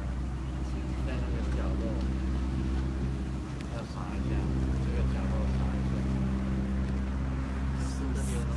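Steady low mechanical hum, a little louder from about four seconds in, under faint murmuring voices.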